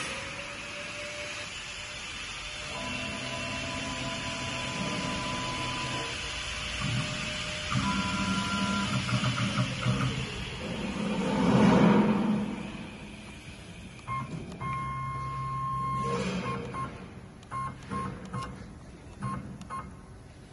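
CNC wood lathe's axis drive motors whining in steady tones that start and stop every few seconds as the machine is jogged from its handheld controller. A brief rushing swell comes about halfway through, and a few light knocks near the end.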